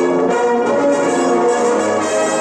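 Orchestral music led by brass, playing a melody that moves note to note every fraction of a second.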